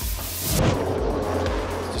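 Supercars V8 race cars running in pit lane, a steady engine and traffic noise, under background music with a steady beat. The sound changes abruptly a little over half a second in, from a broad hiss to a steadier engine noise.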